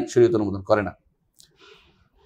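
A man's voice lecturing for about the first second, then a pause with a faint click and a soft brief rustle.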